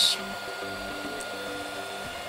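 Prusa i3 A602 3D printer printing: its stepper motors whine in steady tones that jump to new pitches every half second or so as the print head changes moves, over a steady fan hum.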